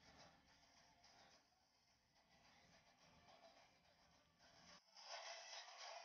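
Near silence, then about five seconds in, faint thin music with no bass leaks from over-ear headphones as the player's volume is turned up.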